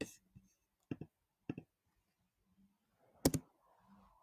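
Computer mouse clicking: four short, separate clicks, the loudest a double click near the end.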